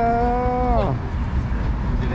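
A long, drawn-out vocal call, like a held 'ooooh', that stays on one pitch and then drops off about a second in, over crowd chatter.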